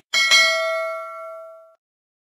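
Notification-bell sound effect: a bright ding struck twice in quick succession, ringing out and fading away over about a second and a half.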